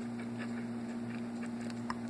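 A steady low hum runs under a quiet room, with one faint click near the end as a fork touches the plate.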